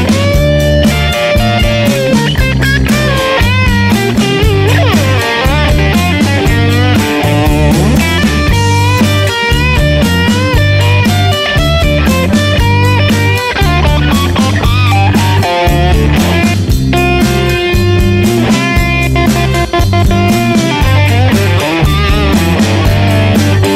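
Blues-rock instrumental break: an electric guitar lead playing bent and sliding notes over a steady groove of bass and drums.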